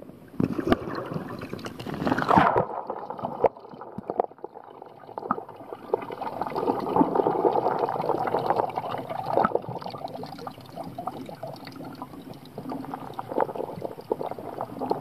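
Water heard through a camera submerged just under the surface: a hissy splashing for the first two seconds or so, then a muffled, steady gurgling and sloshing with scattered clicks and knocks against the housing.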